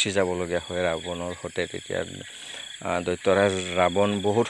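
A man talking over a steady, high-pitched chirring of insects, likely crickets.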